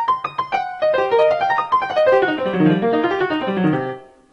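A software piano sound, driven over MIDI by taps on a computer keyboard, plays a fast blues-scale run. The notes climb quickly for about the first second, then cascade down in rapid steps to a low note near the end.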